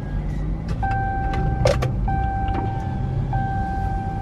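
A parked car's engine idling, heard from inside the cabin as a steady low hum. Over it a steady high tone sounds from about a second in, broken briefly every second or so, with a couple of sharp clicks near the middle.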